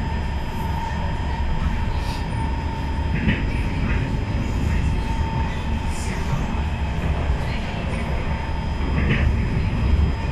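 Cabin of an SMRT C151 metro train running at speed: a steady low rumble of wheels on track with a constant high tone over it, and a few light clicks.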